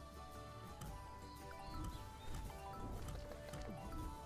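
Online slot game's background music playing quietly, with steady held notes over a low beat.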